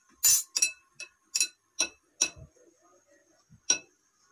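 Glass mixing bowl clinking as bangles on the mixing hand knock against it while gram flour is worked by hand: sharp ringing clinks, two or three a second for the first two and a half seconds, then one loud clink near the end.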